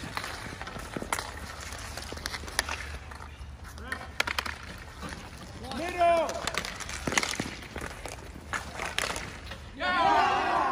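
Street hockey on asphalt: a scatter of sharp clacks from sticks hitting the ball and the pavement, with players' voices and a loud shout about six seconds in.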